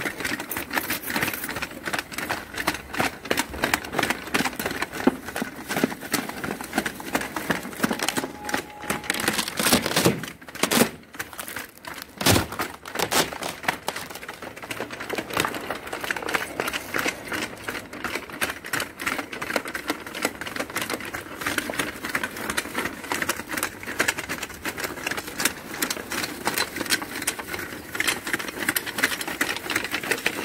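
Homemade 'Triton' tracked robot driving over thin snow, its metal-cleated tracks clattering in a fast, continuous run of clicks. A few louder knocks stand out about ten to twelve seconds in.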